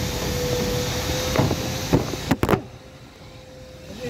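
Steady repair-shop background noise with a thin constant hum. A few sharp knocks come in the second half as the phone is handled and swung around, and then the background drops suddenly to much quieter for the last second and a half.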